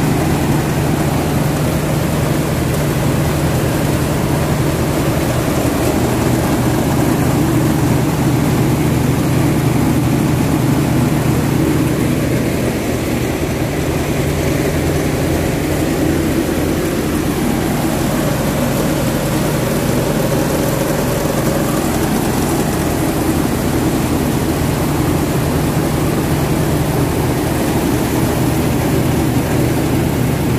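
Rice mill machinery running steadily while milling paddy into rice: a loud, continuous machine hum.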